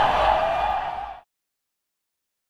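Background noise of a busy, rain-wet street that fades out and cuts off a little over a second in, followed by complete silence.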